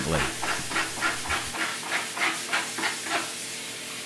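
Algae being scraped off an aquarium algae scrubber's screen in a sink: short scraping strokes, about three a second, over running tap water. The strokes die away shortly before the end.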